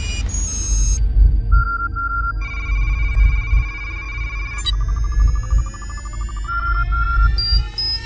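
Sci-fi intro sound design: a deep, loud low drone with steady high electronic tones, two pairs of short beeps, and a spread of rising synth tones from about halfway through.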